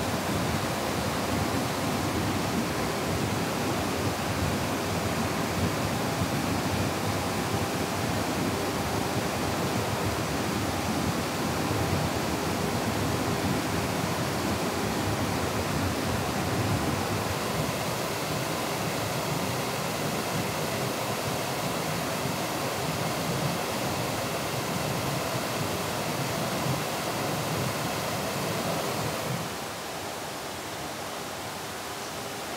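Thin mountain waterfall cascading down a mossy rock face into a rocky stream: a steady rush of falling and splashing water, dropping a little in level just before the end.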